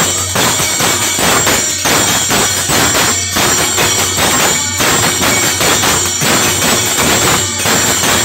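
Live Hindu devotional bhajan: a dholak barrel drum played by hand in a steady rhythm, with jangling small hand cymbals, harmonium and a man singing.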